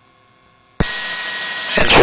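Police radio transmission keying up: faint hum, then a click about a second in that opens onto steady radio static, with a man's voice starting over the radio near the end.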